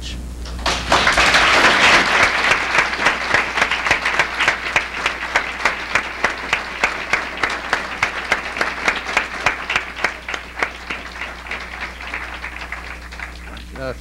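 Audience applause that breaks out about a second in, is fullest over the next couple of seconds, then slowly thins to scattered separate claps near the end. A low steady electrical hum runs underneath.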